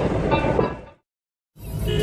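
Rumble of a vehicle driving on a road, heard from inside it. About a second in it fades out to complete silence for half a second, then fades back in.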